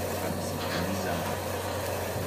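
Handheld butane kitchen torch burning with a steady hiss as a piece of sushi fish is flame-seared, over a constant low hum.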